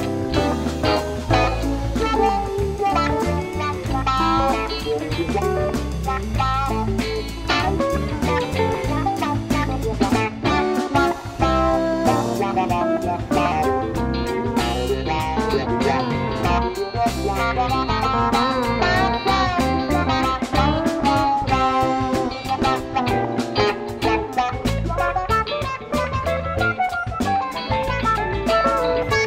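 Live band playing an instrumental break with no vocals: electric guitars over bass and drums. The lead guitar line bends its notes up and down.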